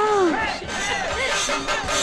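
A festival crowd shouting and cheering over music, with one loud shout that rises and falls right at the start.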